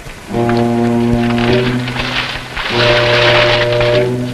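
Dramatic film background score: a low, held note is sounded twice, the second starting after a brief break near the middle, with a hiss swelling above it.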